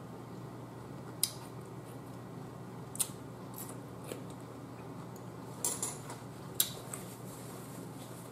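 A person chewing seafood close to the microphone, with a handful of short, sharp mouth clicks scattered over a quiet, steady room hum.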